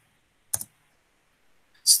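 A single short click, as from a computer at the lecturer's desk, about half a second in, within an otherwise silent pause; a man's voice starts near the end.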